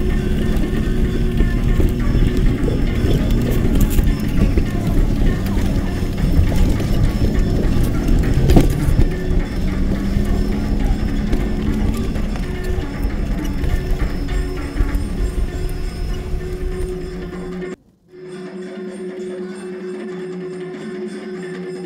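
Loud engine and road rumble with jolts and rattles heard from inside a vehicle driving a rough dirt road, with music over it. About 18 s in the rumble cuts off abruptly and the music carries on more quietly.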